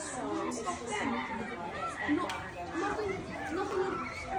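Background chatter: several voices talking over one another, none clear enough to make out.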